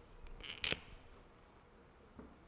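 A brief rustle followed by a single sharp click about two-thirds of a second in, over faint room tone.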